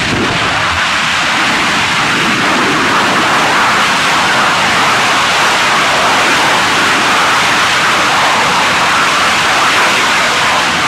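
BLK3 rocket engine firing continuously during a tethered hover test: a loud, steady rushing noise with no pitch that holds level throughout.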